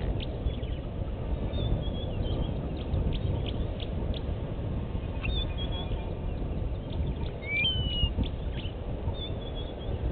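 Outdoor ambience of wild birds calling over a steady low rumble: a few thin, high chirps, and about three-quarters of the way in a whistled note that rises and then holds. Many short ticks run through it.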